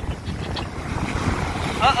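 Wind buffeting the microphone over the rush of surf washing and breaking in the shallows. A voice starts near the end.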